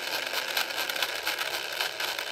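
Small 300 RPM DC gear motor running steadily under PWM drive, with a faint steady high whine, as its speed is cut back to the 60 limit.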